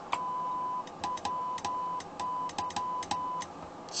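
Morse code being keyed on a CW transmitter sending into a dummy load: one steady beep sounding in dashes and dots, with a faint click each time it starts and stops.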